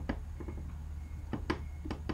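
A few small, sharp clicks, irregularly spaced, over a steady low hum.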